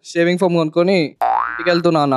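A short comic 'boing' sound effect: one pitched glide that rises quickly for under half a second, about halfway through, between stretches of a man talking.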